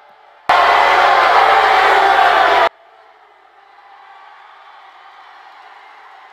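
Rally crowd cheering and shouting, cut into by a very loud burst of noise lasting about two seconds that starts and stops abruptly.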